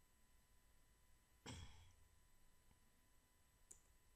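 Near silence, with one brief breath-like exhale about a second and a half in and a faint single click near the end.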